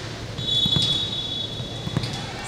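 Referee's whistle blowing one long, steady, high note starting about half a second in, the signal for the serve, over steady background noise.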